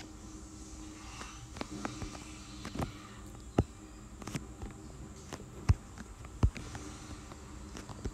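Quiet room noise with about eight short, sharp clicks and taps at irregular intervals.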